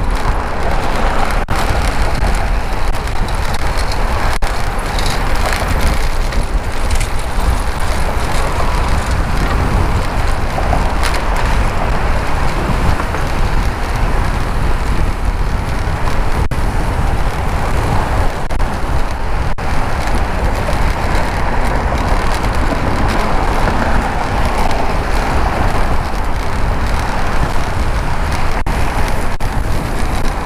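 Wind buffeting a helmet-mounted camera's microphone while riding a bicycle, a loud, steady rumbling rush with no break.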